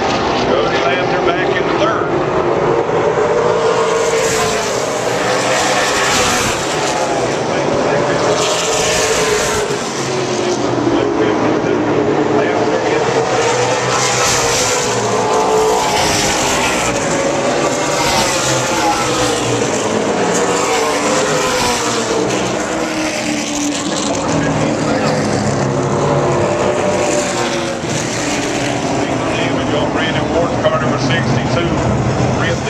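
Race car V8 engines running around the oval, the pack's pitch rising and falling as cars pass in waves every few seconds.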